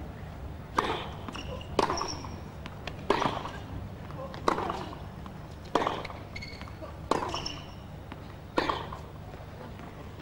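Tennis ball struck back and forth with rackets in a rally, seven crisp hits about 1.3 seconds apart, with short high squeaks after some of them. A steady low hum runs underneath.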